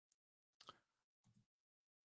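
Near silence, broken by a few faint, brief ticks and rustles.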